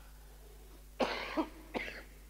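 A man coughing into a tissue: one sharp cough about a second in, then two shorter ones.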